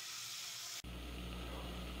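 Faint sizzling of cubed beef searing in a hot pressure-cooker pan. About a second in the sound changes abruptly to a faint steady low hum.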